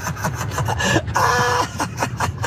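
A man laughing hard in short, choppy bursts, with one longer, louder peal a little past the middle.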